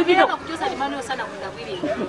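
Only speech: people talking and chattering, with the voices quieter in the middle.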